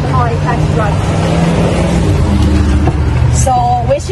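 Steady low rumble of a horse-drawn buggy rolling along a paved road, heard from inside the carriage, with brief voices near the start and end.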